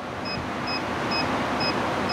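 A car's warning chime beeping steadily about twice a second, each beep short and high, over the steady noise of the running car.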